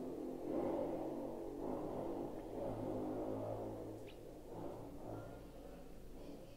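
Motorcycles passing outside, their engines rumbling as they go by, muffled and slowly fading away.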